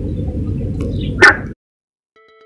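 A single short, loud dog bark over a steady low rumble. The sound cuts off abruptly about a second and a half in.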